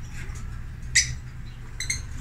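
Lovebird chirps: one short, sharp chirp about a second in, then a quick few short high chirps near the end, over a steady low hum.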